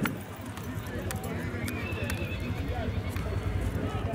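Horses' hooves thudding on grass and dirt as a saddled horse is led and another is trotted, with people's voices in the background and a steady low rumble underneath.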